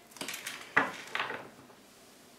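Tarot cards being handled: several quick rustles and taps in the first second and a half as a card is slid off the deck and laid on the wooden tabletop.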